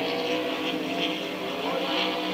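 Racing powerboat engines running flat out, a steady even drone with one pitch rising slightly near the end.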